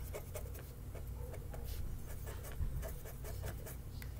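Felt-tip permanent marker drawing on paper laid on a wooden table: a run of short scratchy strokes.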